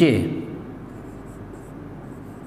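Marker pen writing on a whiteboard: a few faint short scratchy strokes after the tail end of a spoken word.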